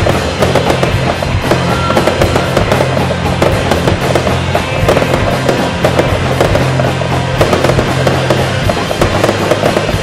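Fireworks going off in a dense, rapid run of bangs and crackles, over music with held bass notes.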